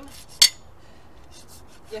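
A farrier's hoof rasp scraping the horse's hoof wall: one short, sharp stroke about half a second in, then a few faint strokes, filing away the split, flaking edge of the hoof.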